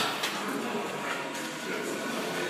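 Busy gym background: indistinct voices and room noise, with two sharp clicks near the start.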